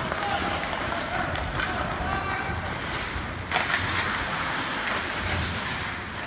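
Ice hockey rink during play: indistinct shouts and chatter from players and spectators over the scrape of skates on the ice, with a single sharp knock about three and a half seconds in.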